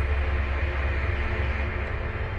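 A loud, deep rumble with a rushing hiss over it, starting suddenly and easing off near the end: a dramatic sound effect in an animated soundtrack.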